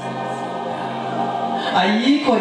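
Church music holding one steady, sustained chord, heard as gospel choir singing. A man's voice comes back through the microphone near the end.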